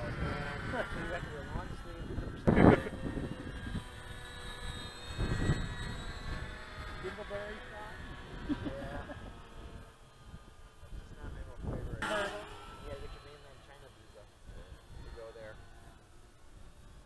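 Radio-controlled Bearcat warbird model in flight: its motor and propeller give a faint, steady whine that fades away over the first ten seconds or so as the plane flies off.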